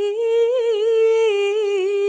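A single voice humming a slow melody without accompaniment, holding long notes with small wavering turns in pitch.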